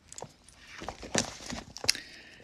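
A paperback book being handled, with a few soft taps and page rustles as it is lowered and its pages are turned.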